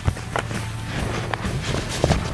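Background music, with cloth rustling and a few light knocks as a sandblasting helmet and its fabric cape are pulled on over the head.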